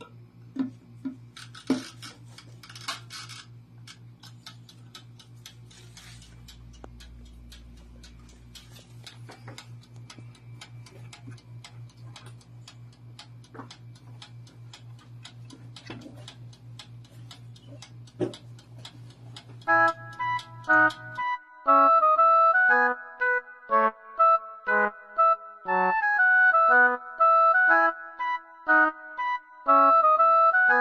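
Camel 6-litre toaster oven's clockwork timer ticking steadily over a low hum, after a few clicks as the door is shut and the dial set. About twenty seconds in, piano-like background music comes in and the ticking and hum stop.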